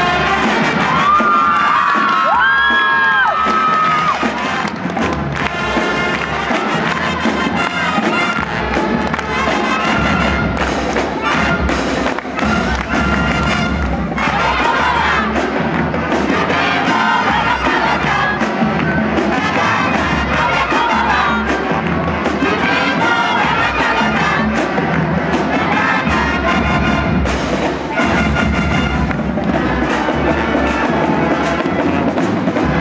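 A marching band of brass, saxophones and drums (sousaphone, trumpets, trombones, snare drums, bass drum, cymbals) playing, with an audience cheering loudly over the music. The sound is loud and dense throughout.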